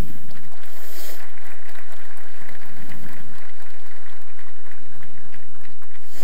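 Audience applauding: a dense, steady spread of many hand claps.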